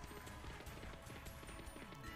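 Faint online slot machine game audio: Madame Destiny Megaways reels spinning with a quick, even ticking over quiet game music.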